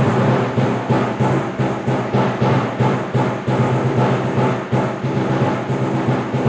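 Solo percussion performance: fast, continuous strokes on low-pitched drums, with stronger accents a few times a second.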